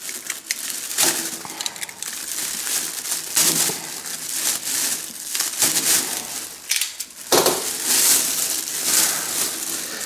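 Thin plastic bag crinkling and rustling as it is torn open and pulled off a drum shell, with many sharp crackles.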